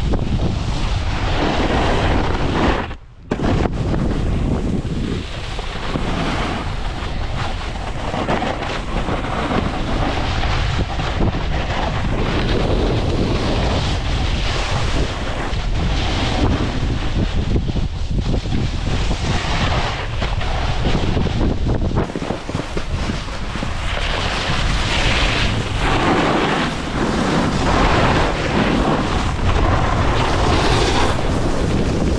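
Wind rushing over a camera microphone moving quickly downhill, mixed with the hiss and scrape of snowboard edges on snow. The rushing dips out briefly about three seconds in.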